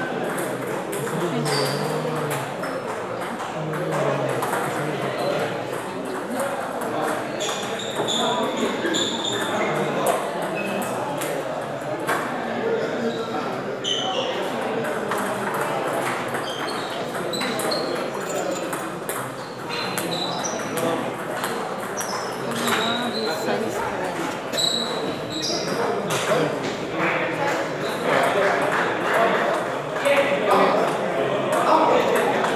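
Celluloid-type table tennis balls clicking sharply off paddles and tables in rallies, many short hits scattered throughout, over a steady murmur of many voices in a large hall.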